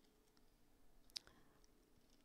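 Near silence: room tone, with one short faint click a little past a second in.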